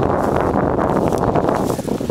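Wind buffeting the microphone: a loud, steady, low rumbling rush.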